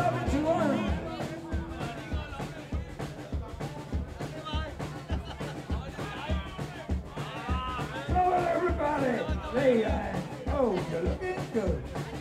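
Live rock band with a drum kit: a held sung note ends about a second in, then a steady bass-drum beat of about two strokes a second carries on, with a voice over it in the second half.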